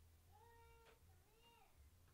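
A domestic cat meowing faintly twice, each call about half a second long and rising then falling in pitch, over a low steady hum.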